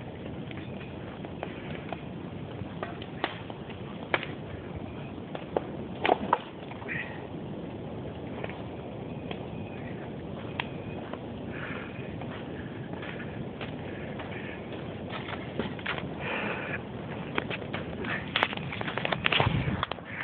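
Bonfire of old wooden furniture burning, the flames giving a steady rush with irregular crackles and sharp pops of the wood, which come thicker and louder near the end.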